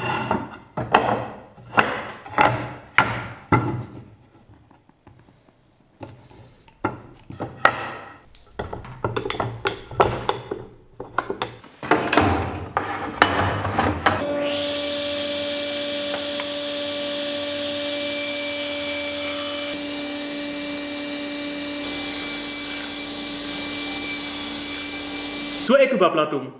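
Wooden boards knocking and scraping as they are pushed into pipe clamps for edge-gluing. About halfway in, a steady hum with a high hiss starts suddenly, holds level and cuts off abruptly near the end.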